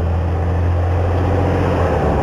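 Busy urban road traffic: a steady low rumble of car engines and tyres on the road, loud enough that the speaker has to shout over it.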